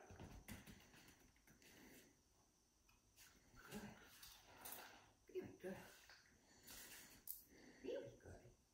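Near silence: room tone with a few faint, short, soft sounds in the second half.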